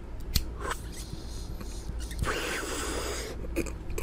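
A few light clicks, then about two seconds in a long, hissy draw of about a second as smoke is pulled in through a smoking pipe.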